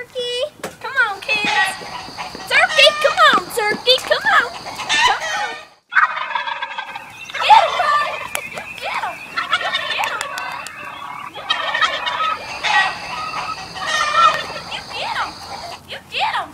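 Turkeys gobbling: many rapid, warbling gobbles overlapping. They break off briefly about six seconds in and then start again.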